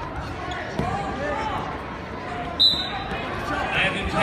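Indistinct voices and shouts from people in the gymnasium, echoing in the large hall, with occasional thuds. About two and a half seconds in there is a short, loud, high-pitched tone.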